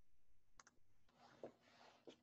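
Near silence with faint computer mouse clicks: a quick double click about half a second in and a single click a little before the end.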